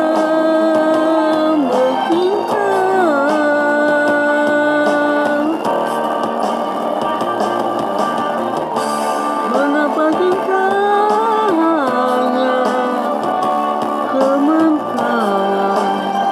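A Malay-language pop ballad from a karaoke video: a sung melody of long held notes that slide between pitches, over a guitar and band accompaniment.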